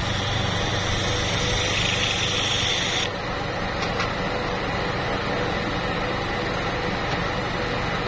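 OCA debubbler pressure chamber starting up: a steady hiss of air filling the chamber over a low motor hum, cutting off sharply about three seconds in. A quieter steady machine noise runs on after that while the chamber holds pressure to clear bubbles from the laminated screen.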